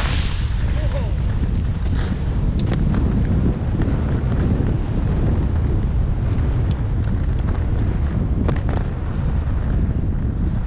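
Wind buffeting the microphone of a skier moving downhill: a steady, heavy low rumble, with skis hissing over the snow and a few sharp clicks scattered through.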